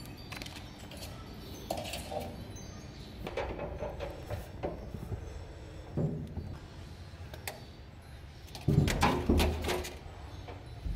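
Kittens playing on a tiled floor: scattered clicks and knocks as they leap and scramble, with a louder run of thumps near the end.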